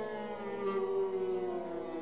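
Six solo voices, soprano down to bass, and a viola hold long overlapping glissandi on sung vowels. Several pitches slide slowly downward together.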